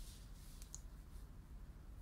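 Quiet low hum with a few faint, short clicks in the first second.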